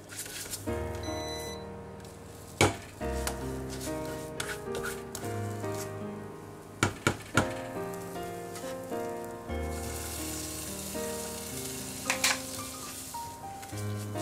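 Background music with a steady bass line. Over it, a silicone spatula knocks against a nonstick saucepan a few times as overcooked custard cream is stirred. Near the end comes a few seconds of sizzling from the custard on the hot pan.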